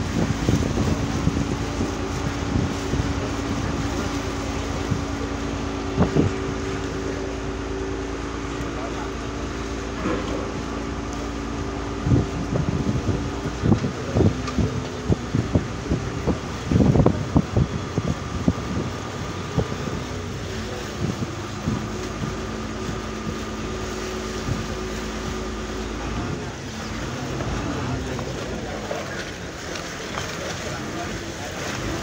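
Diesel engine of a Venice vaporetto (water bus) running with a steady hum, its tone changing near the end, with water rushing along the hull and scattered knocks on board.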